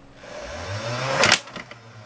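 Motorised Nerf Tommy 20 blaster firing a dart, triggered by the broken infrared beam. Its two flywheel motors spin up, the sound building for about a second, then the pusher motor drives a dart through with a sharp burst, and the motors stop.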